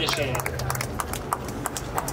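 Footsteps of several people on a stage floor: irregular hard knocks and clicks, several to the second, with shuffling.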